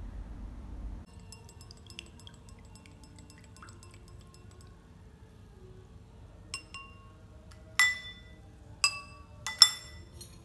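Spoon clinking against a stemmed drinking glass as tea is stirred: faint light ticks at first, then about five sharp clinks with a brief glassy ring in the second half, the loudest near the end.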